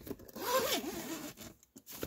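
Zipper on a fabric cargo storage bag being pulled open in one stroke, a rasp lasting a little over a second.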